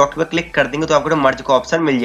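A man speaking Hindi in continuous narration, his voice hoarse from a sore throat.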